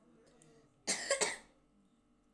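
A child coughing once, a short burst of a few quick pulses lasting about half a second, about a second in.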